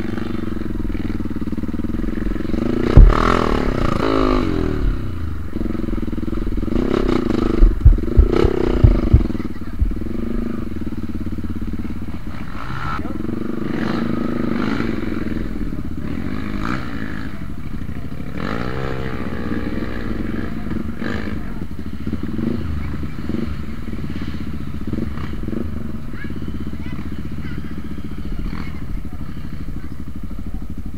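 Yamaha WR155R's single-cylinder four-stroke engine running under throttle on a muddy trail, its revs rising and falling. There is a sharp knock about 3 seconds in and a quick cluster of thumps around 8 seconds in, as the bike jolts over the rough ground.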